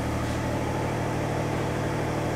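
A steady, even machine hum with a low, unchanging pitch, with no change or break.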